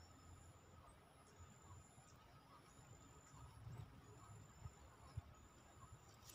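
Near silence: faint outdoor ambience, with thin high-pitched tones coming and going in short stretches and a few soft low bumps near the end.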